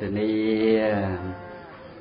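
A monk's voice through a microphone, intoning one long drawn-out syllable at a steady pitch in a chant-like way for about a second and a half, then trailing off.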